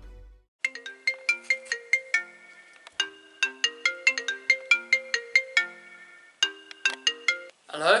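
Mobile phone ringtone: a short tune of quick, sharply struck notes played over and over, stopping just before the call is answered.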